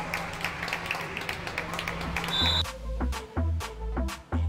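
Sports-hall sound with scattered clapping, a short high whistle, then electronic music with a steady, heavy beat starts about two and a half seconds in.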